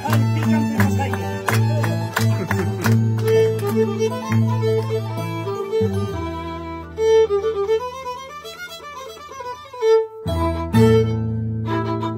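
Andean folk harp and violin playing a carnival tune together, the harp carrying a steady bass under the violin's melody. About seven seconds in, a run of notes climbs and then falls, followed by a brief break before both instruments pick up again.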